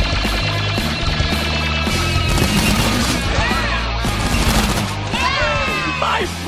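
Hard rock music: distorted electric guitar power chords over a heavy low end, with squealing bent guitar notes near the end.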